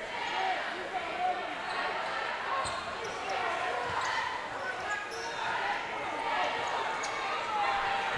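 Crowd chatter echoing in a gym, with a basketball bouncing on the hardwood court a few times and sneakers squeaking now and then.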